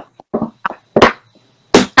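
A handful of short, clipped fragments of a woman's voice, separated by brief gaps.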